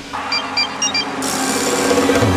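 A steady mechanical whirring hum that builds in level. It has a few short high electronic beeps in its first second, and a hiss rises over it about a second in.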